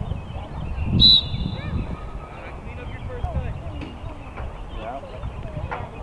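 One short, shrill whistle blast about a second in, with a fainter high tone trailing for another second or so. Underneath are distant scattered voices of spectators and players, and wind rumbling on the microphone.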